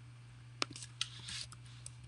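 Computer keyboard keystrokes, about six quick faint clicks starting about half a second in, over a steady low hum.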